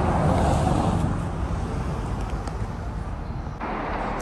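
Outdoor street noise: a steady rumble of road traffic mixed with wind buffeting the microphone, easing off gradually.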